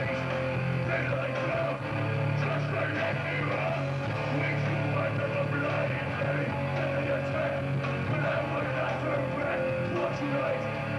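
Hardcore punk band playing live: distorted electric guitar, bass and drums at full tilt, with the singer shouting into the microphone.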